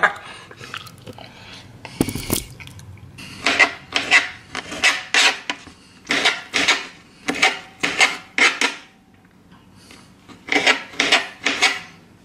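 Kitchen knife chopping jalapeño slices on a cutting board: short, crisp strokes about two to three a second, pausing briefly about nine seconds in, then resuming. A single thump about two seconds in, before the chopping starts.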